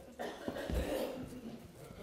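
A person coughing or clearing the throat, a noisy sound lasting about a second with a low thump partway through.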